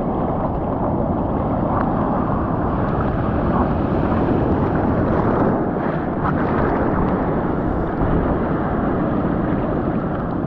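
Sea water sloshing and splashing around a water-level action camera as a bodyboarder paddles, with wind buffeting the microphone; a steady, even rushing noise throughout.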